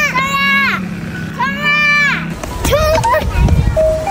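A girl shouting "chong a, chong a" ("charge! charge!"): two long, high-pitched cheering calls, followed by shorter child voices near the end.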